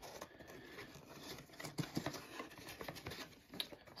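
Cardboard bulb box being opened by hand: faint rustling and scraping of the paperboard flaps and inner insert, with a few light clicks.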